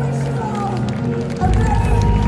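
A live symphonic metal band plays, with a voice line over the music; about one and a half seconds in, the full band comes in with a loud, heavy low end.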